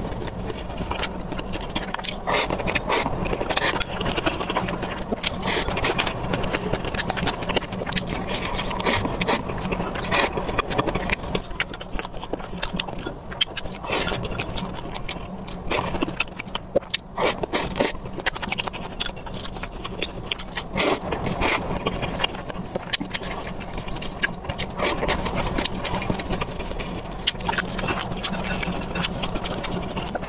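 Close-miked chewing and eating sounds, with many short clicks and scrapes from wooden chopsticks against a glass bowl, over a steady low hum.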